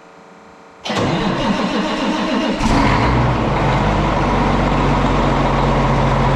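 Large Case IH tractor's diesel engine starting: it turns over about a second in, then catches a little past halfway through the first three seconds and settles into a steady idle.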